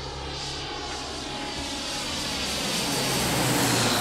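Jet airliner approaching with its engines running, the noise growing steadily louder, with a high whine that slowly drops in pitch.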